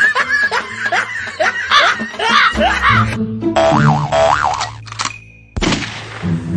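Cartoon comedy sound effects over background music: a quick series of rising pitch glides, then a wobbling boing sound over a steady bass line.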